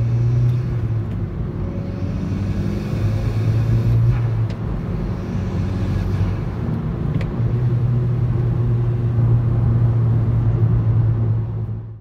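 Volkswagen Golf R's turbocharged 2.0-litre four-cylinder pulling under acceleration through an ECS Luft-Technik aftermarket intake, heard from inside the cabin with the windows up. A steady low engine note with brief breaks about four and a half and seven seconds in.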